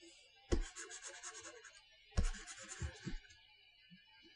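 Two brief scratchy scraping strokes, about half a second and two seconds in, each fading into faint rubbing: a hand moving a computer pointing device across the desk while working the brush.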